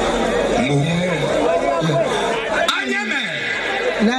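Speech only: several men talking over one another on stage, partly through microphones.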